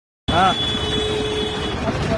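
Busy street noise with a short voice call about a quarter second in, and a steady high-pitched tone that holds for about a second and a half.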